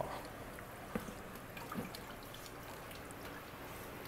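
Faint water dripping and trickling from the holes of a lifted aquarium sump drip tray, with a few single drips standing out about one and two seconds in.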